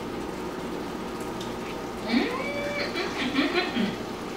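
A steady low hiss of food cooking in the pot on the stove. About halfway in, a woman's wordless voice comes in with short sounds, one rising in pitch, as she tastes from the spoon.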